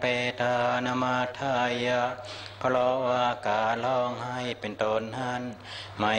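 Thai Buddhist monks chanting a Pali blessing together in unison, on a steady low pitch, in drawn-out phrases with brief breaks between them.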